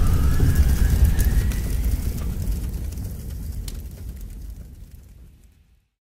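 Logo sting sound effect: a deep rumble with a thin tone rising slowly over it. It fades away steadily over several seconds and ends in silence.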